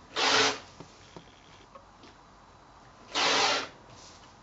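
Rotary cutter rolling along an acrylic ruler through fabric folded in half and half again, on a cutting mat. Two slicing strokes about three seconds apart, each about half a second long.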